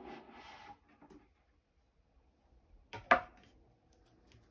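A faint rustle at the start, then two quick knocks close together about three seconds in, the second the louder: a hard object being handled and set down.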